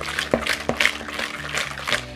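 A wire hand whisk beating creamed butter and sugar in a bowl, making a quick rhythm of wet scraping strokes, about three a second.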